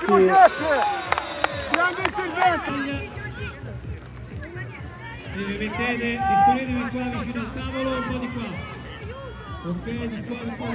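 Young players and spectators shouting and calling out across an outdoor football pitch, loudest and most crowded in the first three seconds, then quieter calls.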